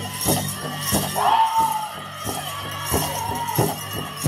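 Powwow drum and singers performing a grass dance song: the big drum struck in a steady beat of about three strokes a second, with a high lead voice holding a wavering note from about a second in and again near three seconds.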